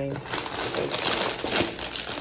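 Cardboard cereal box being opened and its plastic inner bag crinkling as it is pulled open, with a few sharper crackles along the way.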